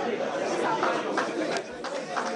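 Only speech: several voices talking at once, overlapping chatter in a large hall.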